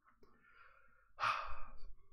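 A man's audible sigh: a breathy exhale of under a second, starting about a second in, after a fainter breath.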